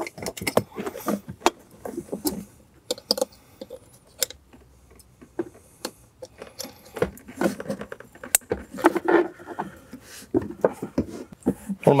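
Plastic wiring-harness connectors clicking and rattling as they are handled and plugged together, making a run of irregular sharp clicks and light knocks.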